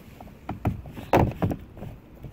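A few irregular knocks and clicks of plastic as hands work under the car's front bumper, pushing plastic push rivets back into the bumper and lip.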